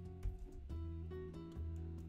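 Background music: soft plucked notes changing every half second or so over a held low bass.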